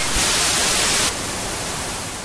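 Television static hiss, an even white-noise rush. It is louder for about the first second, then drops to a softer hiss.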